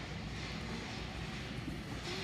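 Steady background noise of a large store interior, an even rumble and hiss with no single clear source.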